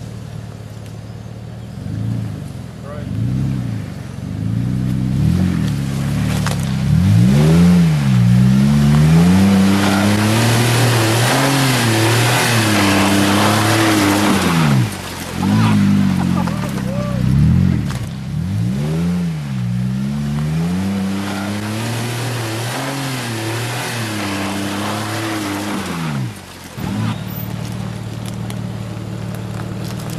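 Jeep Wrangler JK engine revving up and down again and again as the 4x4 crawls up a rutted, rocky trail on open diffs. Through the first half a loud rush of noise runs under the revs.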